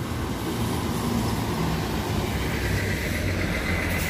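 Large intercity coach driving slowly past, a steady engine and tyre sound with a low hum, while a second coach approaches; a faint high whine comes in during the second half.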